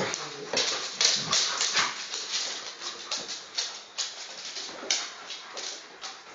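Alaskan malamutes, two adults and a puppy, playing rough on a wooden floor: a fast, irregular run of scuffles, claw clicks and short breathy huffs.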